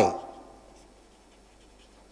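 Faint scratching of a felt-tip marker writing on paper, heard just after a man's spoken word trails off at the start.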